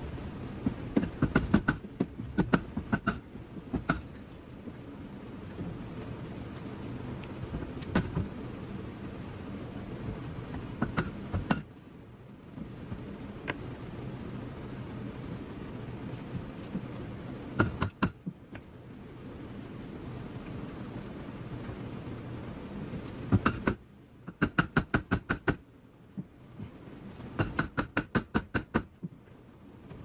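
Blows of a big hammer on a wooden block held against the crumpled sheet-steel rear quarter panel of a Nissan 240SX (S14), knocking out the dent. Single strikes come every few seconds, then two quick runs of about five blows a second near the end.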